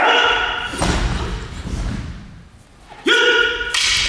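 Battle shouts (kiai) from stage-combat fighters: two short, loud cries about three seconds apart, each ending with a sharp crack of practice swords striking.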